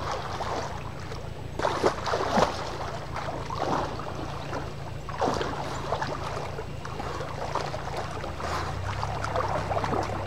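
Water splashing in irregular bursts as a person swims with arm strokes, the loudest splashes about two and five seconds in.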